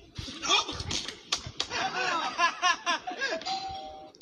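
Laughter and excited voices, then a two-tone doorbell chime near the end, a higher note stepping down to a lower one.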